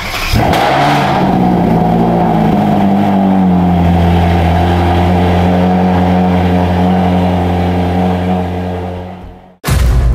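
Ferrari engine starting with a sudden burst, its pitch climbing over the first few seconds and then holding at a steady raised speed. The sound fades away near the end.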